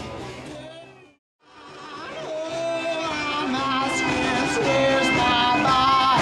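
Live band music with singing fades out to a brief silence about a second in, then another live performance with singing fades in and builds.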